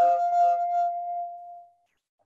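Audio feedback on a video call: a steady ringing tone with smeared, echoing repeats of voice underneath, from a participant's microphone picking up his own speakers. It fades and cuts off shortly before the end.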